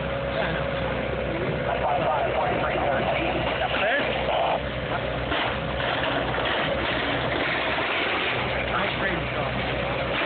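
A heavy diesel engine running steadily at a low, even pitch, with people's voices talking over it.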